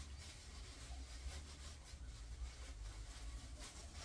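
Faint, irregular rustling of a thin plastic bag with tissue paper inside being handled and folded, over a steady low hum.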